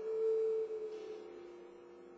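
A metal percussion instrument ringing with two steady, pure-sounding pitches that slowly fade away.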